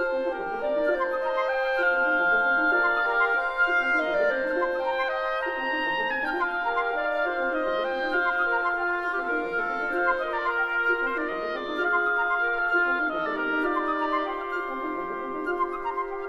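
Wind quintet of flute, oboe, clarinet, horn and bassoon playing a lively classical piece, several held and moving woodwind lines overlapping.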